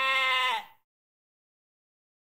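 A single held animal call, steady in pitch and dropping slightly as it fades out less than a second in.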